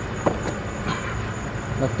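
A steady low rumble and background noise, with one short click about a quarter of a second in.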